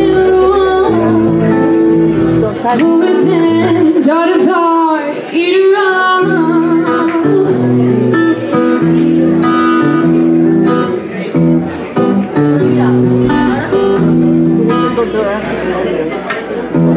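Live music: guitar with a singer's voice. The singer holds wavering notes about four to six seconds in, over steady low chords.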